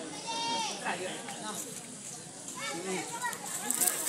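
People's voices calling and shouting, with a high, drawn-out call about half a second in and more calls around three seconds in.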